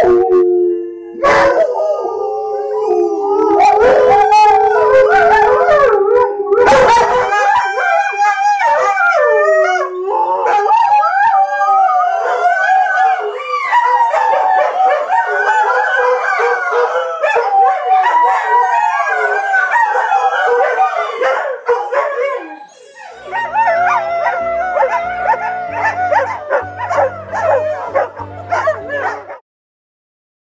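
Several greyhounds rooing together: long, wavering howls that overlap and slide up and down in pitch, with higher yips mixed in. The chorus cuts off suddenly shortly before the end.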